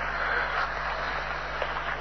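Steady hiss with a low, constant hum: the background noise of an old field audio recording, with no one speaking.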